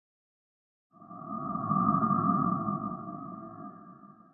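Synthesized title-card sound effect: an electronic hum of two steady held tones over a low rumble, starting about a second in, swelling, then slowly fading away.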